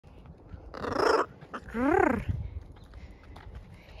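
Blue-and-gold macaw vocalizing: a short, rough, noisy squawk about a second in, then a pitched call that rises and falls in pitch about half a second later.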